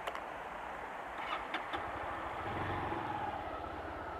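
A motorcycle engine running at low revs under a steady hiss; the engine hum swells for a moment past the middle.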